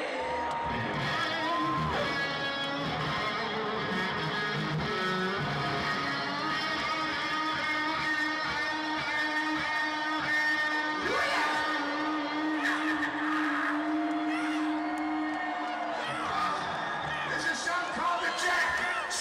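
Electric guitar solo played live through a stadium PA, heard from the crowd: sustained, bent notes and slides, with one long held note through the middle.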